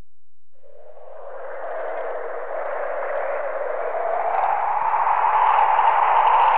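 Wind sound effect: a band of rushing noise that swells steadily louder and slowly rises in pitch.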